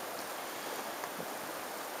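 Steady, faint outdoor background hiss with no distinct events.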